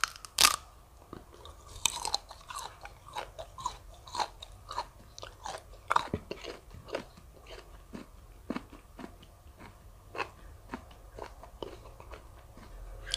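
A bite into a raw prickly pear cactus pad (nopal), one loud crunch just after the start, then steady chewing of the pad with a few short crunches a second.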